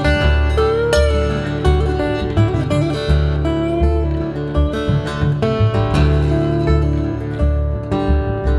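Steel-string acoustic guitar picked in an instrumental passage, a stream of ringing picked notes over low bass notes that pulse steadily underneath.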